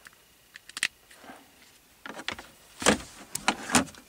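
Light handling noise: a few scattered clicks and knocks as a phone charger cable and plug are handled and plugged into a car's power socket. There are a couple of faint clicks about a second in and a louder cluster of knocks in the last two seconds.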